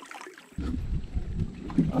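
Kayak moving on the river: a low rumble of water and wind noise on the boat-mounted camera, starting about half a second in.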